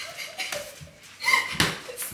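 A few dull thuds of padded boxing gloves hitting gloves and arms in light sparring, the loudest in the second half.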